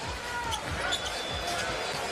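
Basketball being dribbled on a hardwood court, soft bounces under steady arena noise with faint voices.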